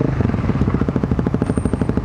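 2008 BMW G650 Xchallenge's single-cylinder engine on the move. Its revs drop right at the start, then it runs at low revs with each firing pulse heard as a distinct, even beat.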